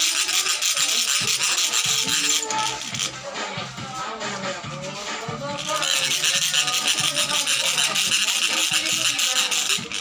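Background music: a song with a singing voice and a shaker-like rattle, the rattle dropping out for about three seconds in the middle.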